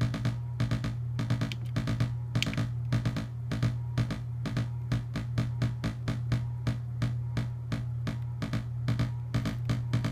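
Eurorack synthesizer patch: a Phase Displacement Oscillator gated through an envelope and VCA by the Zorlon Cannon MKII's gate sequencer, giving a rapid rhythmic stream of short electronic blips, several a second, over a steady low drone. The sequencer's pattern length is being turned down from 16 steps, so the rhythm shifts as it plays.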